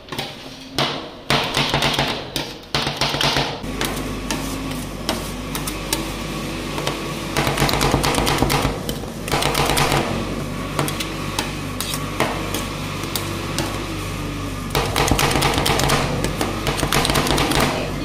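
Steel spatulas rapidly chopping and scraping dragon fruit ice cream mix on a metal cold plate for rolled ice cream: a fast clatter of metal taps on the plate. The chopping comes in louder, quicker runs at the start, in the middle and near the end.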